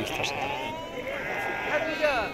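Sheep bleating amid men's voices.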